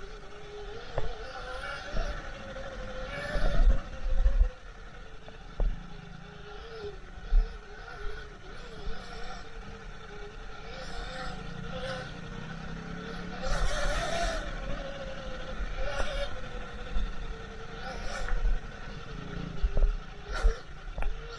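Sur-Ron electric dirt bike running along a bumpy dirt trail: its motor whines, the pitch rising and falling as the rider speeds up and slows down, over repeated low knocks from the trail bumps.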